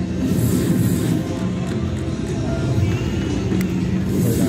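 Griffin's Throne video slot machine playing its electronic music and reel-spin sounds while the reels spin, over a steady casino background din.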